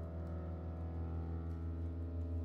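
Small jazz combo playing a slow passage: a chord held steady over a strong low bass note.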